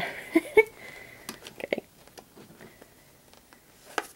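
A short laugh, then a few faint clicks and light rustles of fingers working a staple through the holes of a paper book cover.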